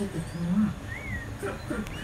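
A single short whistled bird call that rises and falls, about a second in, with a brief low murmur of a man's voice just before it.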